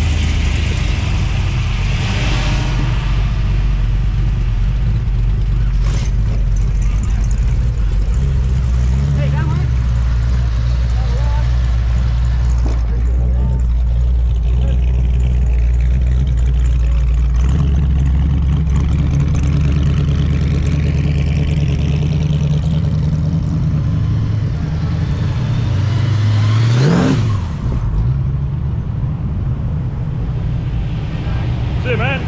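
Classic cars' engines running as the cars roll past in a line, with a steady low rumble that shifts pitch a few times. About 27 seconds in, one engine revs up and drops back as it passes close.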